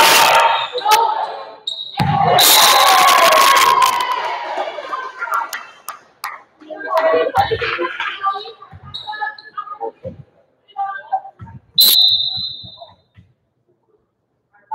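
Indoor volleyball rally in a gymnasium: sharp smacks of the ball being played and players shouting, then a single referee's whistle blast about twelve seconds in.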